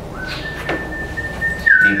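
A steady high whistling tone comes in a moment in and steps up slightly in pitch soon after. There is a single knock about two-thirds of a second in.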